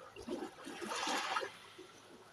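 Shallow seawater sloshing at a rocky shoreline: a single rush of water swells up about half a second in and dies away after about a second.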